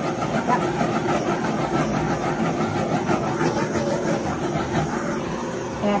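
Handheld torch flame hissing steadily as it is passed over freshly poured epoxy resin to pop surface bubbles.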